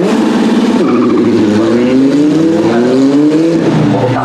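Race car engine accelerating hard. A break in pitch about a second in suggests a gear change, after which the pitch rises steadily for over two seconds.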